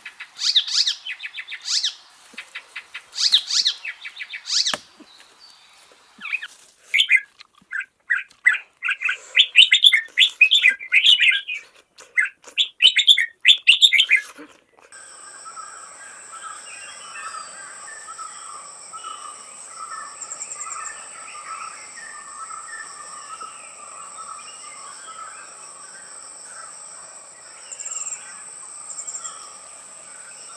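Birds calling in loud bursts of rapid, trilled chatter for about the first fifteen seconds. Then the sound changes abruptly to a steady, high insect drone at two pitches, with softer chirping beneath it.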